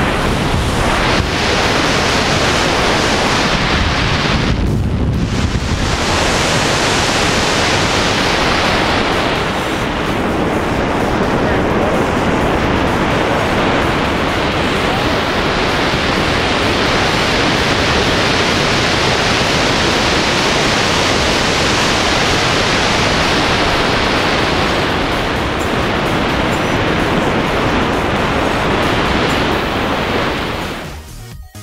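Wind rushing over a wrist-mounted action camera's microphone during a tandem parachute descent under an open canopy: a steady loud rush of noise, briefly duller about four to five seconds in.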